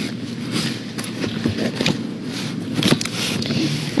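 Rustling and handling noise with scattered small clicks, without speech.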